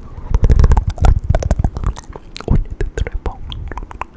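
Close-miked ASMR trigger sounds: a dense run of sharp clicks and taps over muffled low thumps, busiest in the first half.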